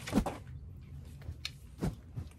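Two quick swishes of a rattan kali stick swung hard through the air as it is drawn and struck, about a second and a half apart, the first the louder.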